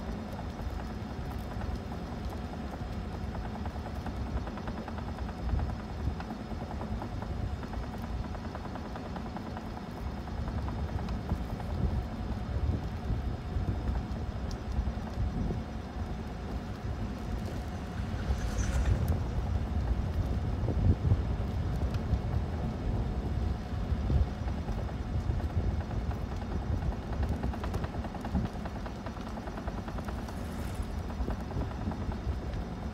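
Wind rumbling and buffeting on the microphone outdoors, a low, uneven gusting noise.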